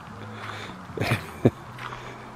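Two footsteps crunching on gravel, about a second in and again half a second later, over a faint steady low hum.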